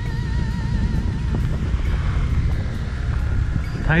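Steady low rumble of wind buffeting the microphone and road noise while riding along a road. A faint held musical note with a wavering vibrato sounds at first and fades out about a second and a half in.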